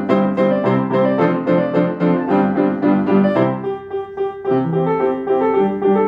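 Acoustic grand piano played solo: a steady, quick run of notes in a lively tune. About four seconds in it eases briefly to a softer held chord, then the notes pick up again.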